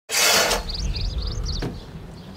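Small birds chirping in quick runs of short, high, rising notes, after a brief rush of noise at the very start. A single sharp knock comes near the end.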